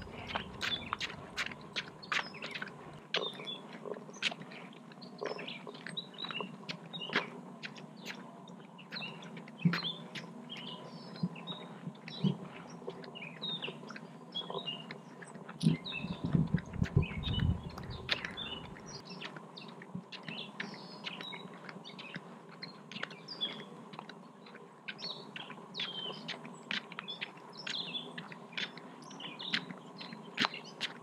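Songbirds chirping and calling throughout, over a faint steady tone, with many sharp short clicks. A louder low rumble runs for about three seconds just past the middle.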